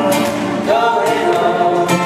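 Male vocal group singing in close harmony over an acoustic guitar, with several voices held and gliding together.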